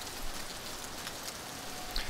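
Steady, even hiss of background noise, with no distinct events in it.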